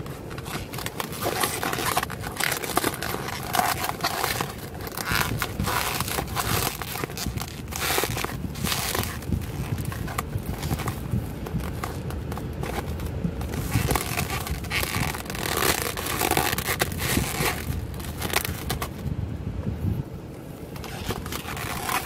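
Plastic cling wrap crinkling and crackling as it is pulled and peeled off a plastic takeout food tray, in irregular bursts.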